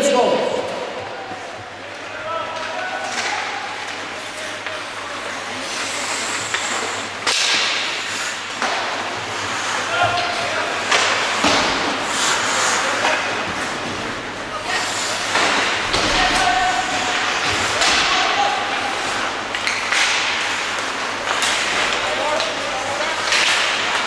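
Ice hockey play on an indoor rink: skates scraping the ice, with many sharp knocks and thuds of sticks, puck and boards scattered throughout.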